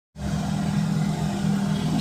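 A steady low hum over an even hiss. It starts just after a brief dropout at the very beginning and grows slightly louder.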